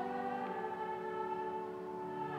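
Church music holding a sustained chord of several steady notes, shifting to new notes about half a second in.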